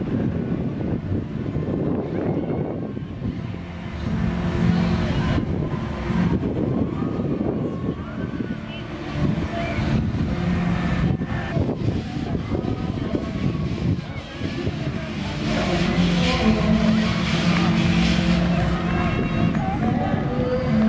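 Indistinct voices that no words can be made out of, over a steady low rumble: general showground background noise.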